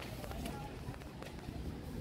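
Low, steady room rumble with faint voices in the background.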